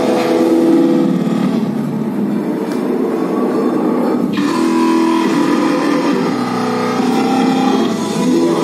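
Recorded dance music for a robot-dance routine playing over loudspeakers. In the first half the track thins to a sustained tone that slowly rises in pitch, and the full music cuts back in suddenly about four and a half seconds in.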